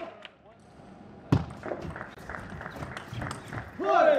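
Table tennis rally: one loud hit a little over a second in, then a quick run of small clicks of the celluloid ball on bats and table, ending in a player's shout.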